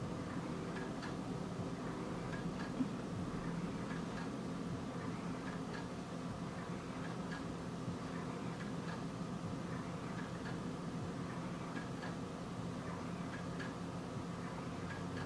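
Faint light ticking, roughly twice a second, over a steady low hum.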